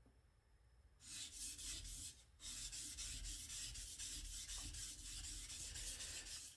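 A Ginsan stainless-steel knife blade being sharpened on a Shapton Kuromaku #1000 whetstone: steel rubbing on the stone in quick, even back-and-forth strokes. The strokes start about a second in, pause briefly just after two seconds, then run on steadily.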